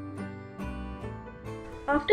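Background instrumental music with plucked, guitar-like notes.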